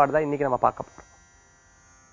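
A man speaking in Tamil for just under a second, then a pause. A faint, steady electrical buzz runs underneath throughout.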